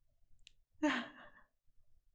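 A woman's single short, breathy vocal sound, falling in pitch, about a second in.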